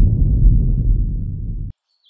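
A deep, low boom from an intro sound effect. It starts suddenly, fades over almost two seconds, then cuts off.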